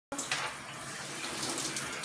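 Shower head spraying water steadily onto a person's head and shoulders, an even hiss of falling water.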